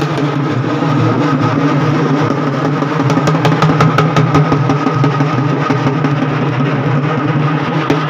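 A traditional temple band plays: a steady low drone with quick drum strokes that grow denser from about three seconds in, while the melody instrument is mostly silent.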